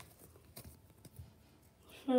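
Near silence, with a few faint, brief rustles of trading cards being handled, about half a second and a second in.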